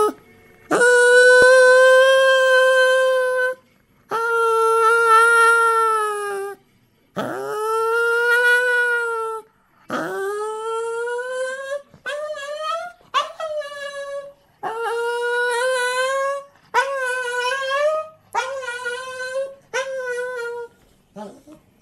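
An elderly Shih Tzu whining and crying with a plush toy in its mouth, about nine high, drawn-out cries. Each swoops up in pitch at the start; the first few are held for two to three seconds, and later ones come shorter and quicker, climbing in steps. This is the crying he does while searching for a place to bury his toy.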